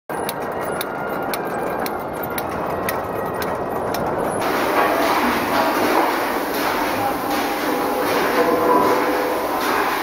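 Egg processing line running with a steady mechanical clatter and a sharp click about twice a second. About four seconds in, eggs and water are tipped from a plastic crate into the stainless-steel washing tank, adding a hissing splash of water over the machine noise.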